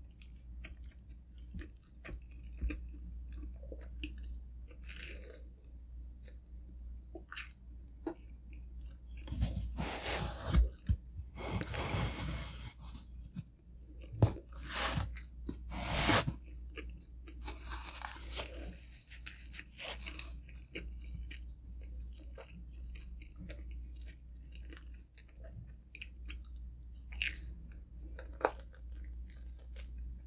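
Close-miked eating of pepperoni pizza: crunching bites of crust and steady chewing. The loudest crunches come in a cluster around the middle.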